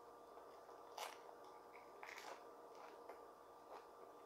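Faint chewing of a tortilla chip topped with rice, with soft crunches about one and two seconds in and a few smaller ones near the end.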